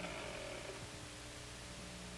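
Faint steady hum and hiss of an old film soundtrack, with no distinct event.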